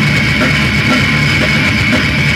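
Loud heavy rock music: distorted guitar over a fast, driving drum kit, a steady dense mix with no breaks.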